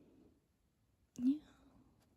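A soft, short spoken "yeah" about a second in, over faint handling of a guidebook's paper pages.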